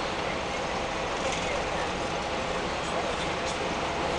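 Steady engine and road noise heard inside the cabin of a moving bus.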